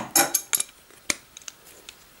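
Metal spanners clinking and knocking against each other and the table: a quick run of sharp clinks in the first half-second, then a few lighter, scattered taps.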